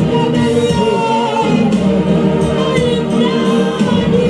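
Gospel worship singing: voices singing together over instrumental backing with sustained low notes and a steady beat.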